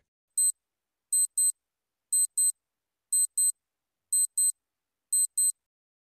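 Clock tick-tock sound effect marking the quiz's thinking time: one short high-pitched tick about half a second in, then a quick pair of ticks once every second, five pairs in all.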